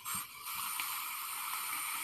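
A long draw on a vape tank through its bottom airflow holes: a steady airy hiss of air and vaporising e-liquid, lasting about two seconds.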